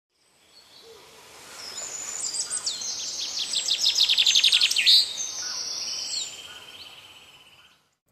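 Songbirds chirping and trilling in high-pitched phrases, with a fast trill of rapidly repeated notes in the middle; the birdsong fades in at the start and fades out near the end.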